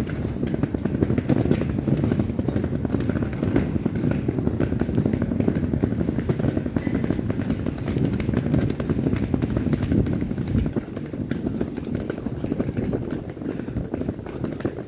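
Outdoor street ambience picked up while walking, dominated by a low, uneven rumbling noise.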